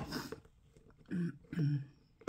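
A woman coughing once sharply, then clearing her throat twice; she has a head cold.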